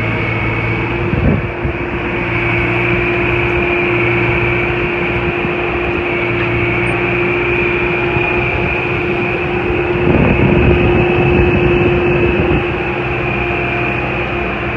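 2007 Gehl DL10L55 telehandler driving along, its diesel engine running steadily under a constant high whine. There is a brief thump about a second in, and the machine runs louder and rougher for a couple of seconds near the end.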